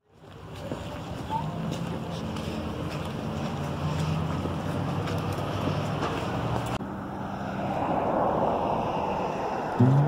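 Wind rushing on the microphone over street traffic noise, with a low steady hum underneath. The sound changes abruptly about seven seconds in.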